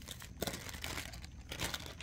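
Clear plastic bag crinkling and rustling as it is handled, in irregular bursts with a sharper crackle about half a second in.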